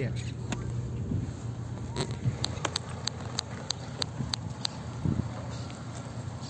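Car engine running at low speed, heard inside the cabin as a steady low hum, with a run of about eight sharp, evenly spaced ticks, about three a second, in the middle.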